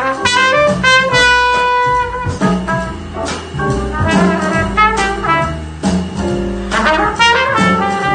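Live jazz: an open trumpet plays a solo line, holding one long note about a second in, over a walking bass and a drum kit with cymbal strokes.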